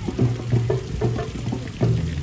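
Live street band playing: a repeating bass line of low held notes under drum hits.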